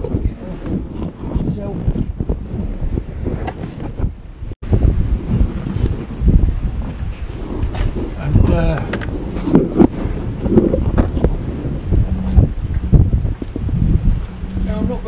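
Wind buffeting the microphone, a continuous low rumble, with a short muffled voice about eight and a half seconds in.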